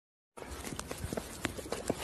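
Scattered light clicks and knocks, irregularly spaced, over a low steady hiss of room noise.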